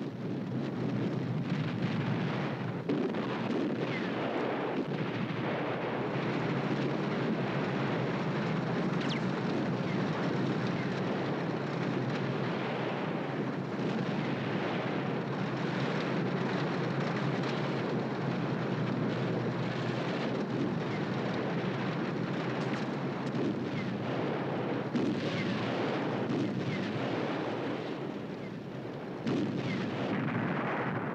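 Battle sound: a dense, unbroken barrage of artillery fire and gunfire with explosions, running steadily and dipping briefly near the end.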